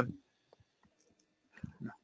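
The last syllable of a spoken word, then a quiet stretch with a few faint clicks and a brief low murmur of a voice near the end.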